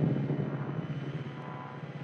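Low electronic drone with a steady hum and faint held tones, slowly fading, with no beat: the ambient intro texture of a techno track.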